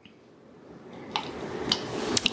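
Quiet handling of soft almond-gelatin cubes being slid off a knife blade into a stemmed wine glass: a faint moist shuffling with a few small sharp clicks, starting about a second in and again near the end.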